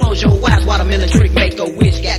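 Hip hop track playing loud: a beat of deep kick drums that drop in pitch, about two a second, over steady bass, with a rapped vocal. The bass cuts out briefly about one and a half seconds in.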